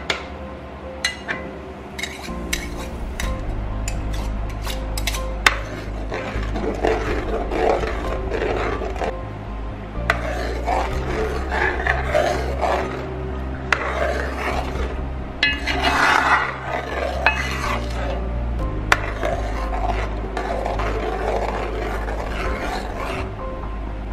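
A steel spoon stirring milky date payasam in a metal pan, scraping and clinking against the pan, with a run of sharp clicks in the first few seconds and scattered ones later.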